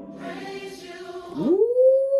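A church choir singing in the song's music, then about a second and a half in a man's voice sliding up into a loud held "ooh" over it, the loudest sound here.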